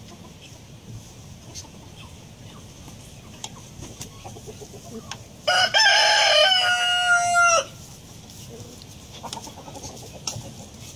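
A rooster crowing once, a loud stepped call about two seconds long, starting a little past the middle, over a faint background.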